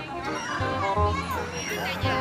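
Children's voices shouting and calling out at play, over background music with a steady bass pulse.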